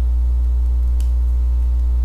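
Loud, steady electrical mains hum with its overtones, picked up by the recording setup, with a faint click about a second in.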